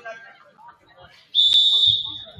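Referee's whistle blown once, a loud, steady, shrill blast that starts sharply near the end and lasts most of a second, over faint chatter in the gym.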